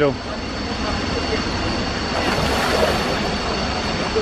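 Steady rush of a waterfall pouring into its plunge pool, with a splash of a person diving into the pool about two and a half seconds in.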